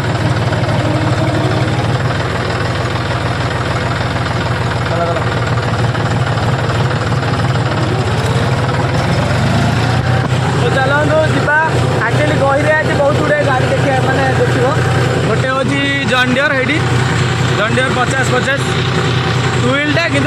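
John Deere tractor's diesel engine running steadily with a continuous low drone, heard from on board the tractor.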